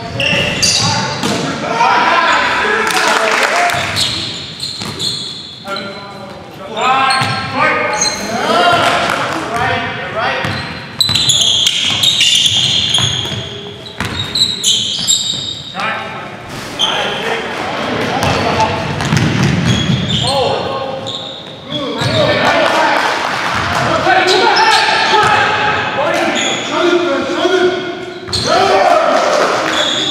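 Live basketball game sound: the ball bouncing on a hardwood gym floor, with players' voices calling out indistinctly, echoing in a large gymnasium.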